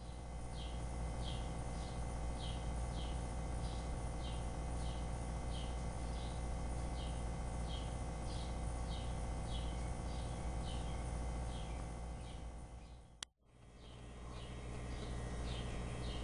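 A bird chirping over and over, short high chirps about twice a second, over a steady low hum. The sound cuts out briefly with a click near the end, then the chirping resumes.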